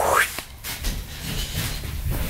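Handling noise from the recording camera being moved by hand: rustling and a low, uneven rumble.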